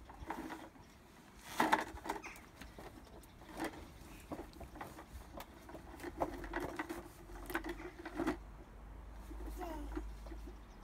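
Plastic toy lawn mower rattling and clicking as a toddler pushes it over boards and paving, in irregular bursts of clicks that come thicker in the middle and later part.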